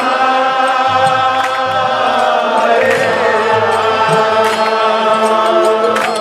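Devotional group chanting of a mantra in unison over a harmonium, with mridanga drum strokes and sharp percussion strikes keeping the rhythm.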